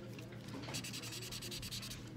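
Fast scratchy rubbing on paper, about a dozen even strokes a second, starting under a second in, over a faint steady low hum.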